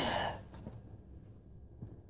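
The breathy tail of a drawn-out spoken "yeah" fading out in the first half-second, then quiet room tone with a faint tick near the end.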